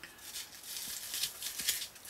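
Coarse foam filter block scraping and rustling against the plastic housing of an Eheim Liberty 75 hang-on-back filter as it is pushed in by hand: a run of several scratchy rustles a second.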